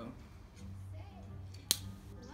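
A lighter clicks once, sharply, near the end as it is struck to light rosemary for a flaming cocktail, over faint background music.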